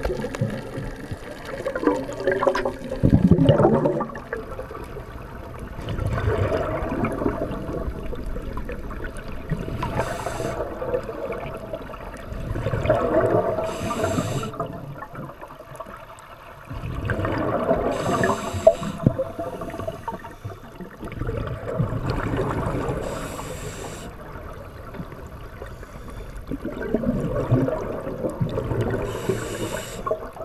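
Scuba breathing heard underwater: a short hiss through the regulator and a gurgling rush of exhaled bubbles, repeating in a breath cycle of about four to five seconds.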